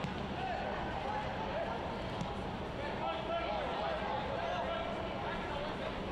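Soccer pitch-side ambience: a steady stadium hum with scattered distant shouts from players calling for the ball.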